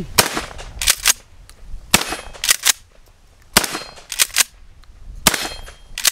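Four shots from a Mossberg 590S Shockwave 12-gauge pump-action shotgun, about a second and a half to two seconds apart, alternating full-size 2¾-inch shells and light-recoil mini shells. Each shot is followed by a quick double clack as the pump is racked back and forward.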